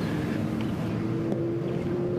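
Steady outdoor background noise with a low, steady hum through most of it.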